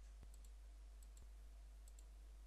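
Near silence: a faint low hum with two faint computer mouse clicks about a second apart, placing polyline vertices.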